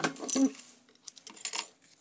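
Sewing machine stitching stops right at the start. About half a second in comes a sharp metallic clink with a brief ring as the steel thread snips are picked up, then softer clicks and fabric handling.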